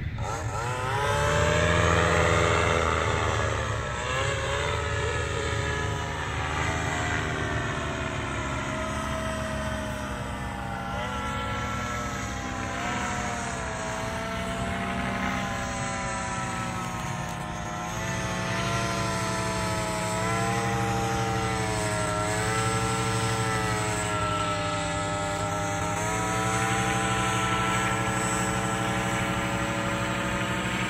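Blackhawk 125 paramotor's engine and propeller droning overhead in flight, the pitch rising and falling as it flies around, loudest about two seconds in.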